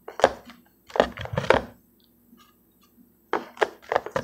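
Rigid plastic toploader card holders clacking and tapping against each other as they are handled and set down. The knocks come in short clusters: one just after the start, several around the middle, and a pair near the end, with faint ticks in between.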